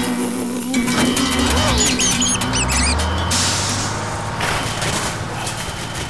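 Band theme music with guitar, bass and drums winds down. A few high, squeaky warbling sound effects come about two seconds in, and a hissing swish follows just after three seconds.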